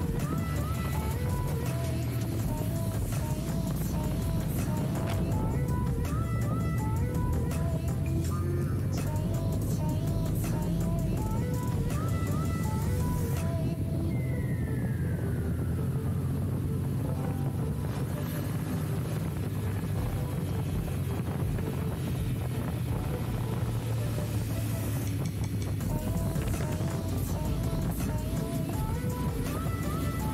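Background music with a repeating melody, and a single falling tone about halfway through, over a low steady rumble.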